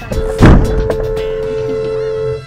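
A car-to-car collision heard from the dashcam inside the stopped car: a loud crunching impact about half a second in as the oncoming sedan's front strikes it. A steady two-note tone follows and holds to the end.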